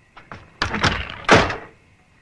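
A few light clicks, then a run of heavier knocks and thuds, the loudest one a little past the middle.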